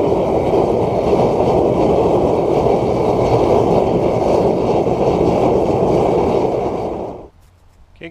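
Homemade waste-oil burner burning used motor oil with forced air: a loud, steady rushing burn that cuts off suddenly about seven seconds in.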